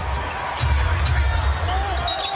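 Sound of a basketball game in play in an arena: a steady low crowd and arena rumble, with a basketball bouncing on the court. A voice begins faintly near the end.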